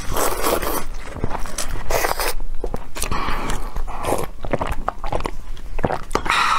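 Close-miked slurping of noodles and chili broth from a paper cup, in several separate slurps about a second apart, with chewing clicks between.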